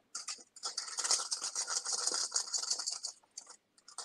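Spinach being strained, with water pattering out of it in a crackly hiss full of small clicks that runs for about two and a half seconds and then stops.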